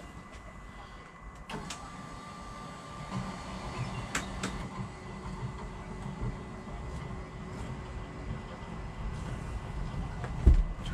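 Electric engine-hatch lift motor running steadily as the powered hatch lowers over the engine compartment, with a low mechanical hum and two sharp clicks about four seconds in.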